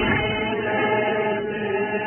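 A large crowd of men and women singing together as one choir, holding long notes.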